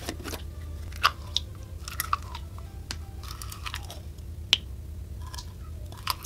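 Clear slime with bead charms pulled from its plastic tub and poured onto other slimes, with sticky crackling and several sharp plastic clicks from the tub, the loudest about four and a half seconds in. A steady low hum runs underneath.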